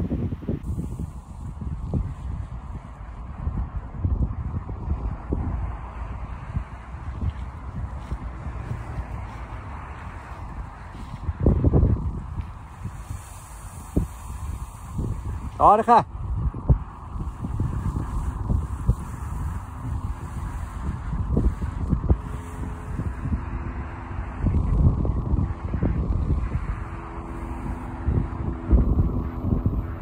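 Wind buffeting the microphone in uneven low gusts while a paraglider wing is kited on the ground. About halfway through, a short wavering honk-like call cuts through.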